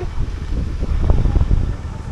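Wind buffeting the camera microphone, a steady low rumble, with faint street noise behind it.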